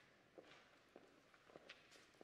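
Near silence with faint footsteps and shuffling on a hard floor: scattered soft, irregular knocks and clicks.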